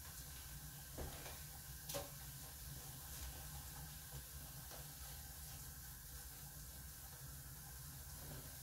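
Soy chorizo frying in a pan, sizzling faintly and steadily over a low hum, with two light knocks about one and two seconds in. The pan is too hot.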